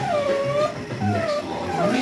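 Young puppy whining: a few short, high whines, each falling in pitch.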